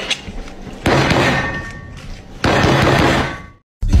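Two loud crashing impacts about a second and a half apart, each with a noisy tail that fades over about a second; the sound cuts off abruptly shortly before the end.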